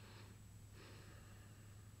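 Near silence: a steady low hum and faint hiss from the recording, with two faint breaths in the first second or so.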